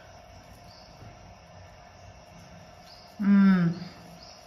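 Faint rustle of fingers mixing chopped onion, grated carrot and coriander in a ceramic bowl, under a steady faint hum. About three seconds in, a woman's brief voiced sound, about half a second long.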